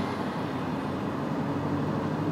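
Steady road noise of a car rolling along an asphalt road, heard from inside the car, with a low steady hum under it.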